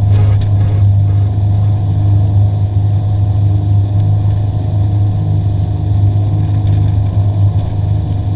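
Glastron speedboat's engine running steadily at speed while towing a wakeboarder, a loud, even, low drone.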